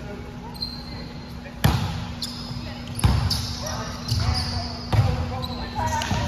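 Volleyballs being struck and bouncing on a wooden gym floor: three loud smacks, about every second and a half, with a few softer ones between. Short high squeaks and voices go on in the background.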